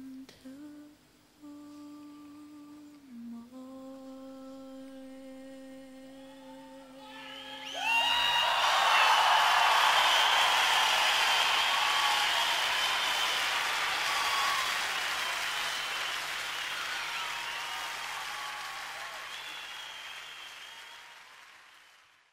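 A woman's unaccompanied voice humming a slow wordless melody, ending on a long held note. About eight seconds in, an audience breaks into loud applause with cheers and whistles, which slowly fades away.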